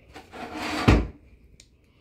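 A brief scraping rub that swells over about half a second and ends in a dull thump.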